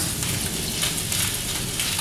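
Beef meatballs frying in hot coconut oil in a frying pan: a steady sizzle.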